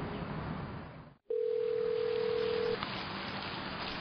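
Steady background hiss, a moment's dropout to near silence, then a single steady electronic telephone tone that lasts about a second and a half.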